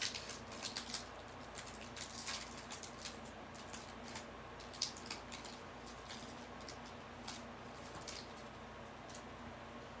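Crinkly wrapper of a baseball card pack being torn open by hand: a run of quick crackles that thins out after about five seconds.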